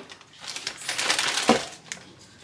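Plastic crinkling and crackling as it is handled, with one sharp click about a second and a half in.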